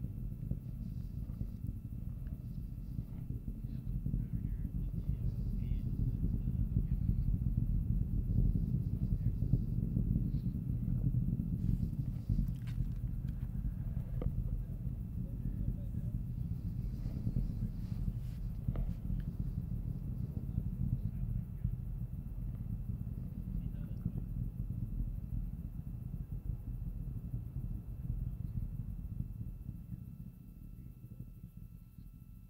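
Low, steady rumble of the Falcon 9's nine-engine first stage heard from far off. It swells over the first few seconds, peaks about a third of the way in, and then slowly eases.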